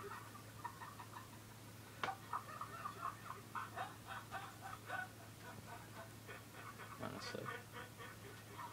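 Faint laughter from the clip being watched: a person laughing in quick, gasping bursts that sound like hyperventilating, with a click about two seconds in over a steady low hum.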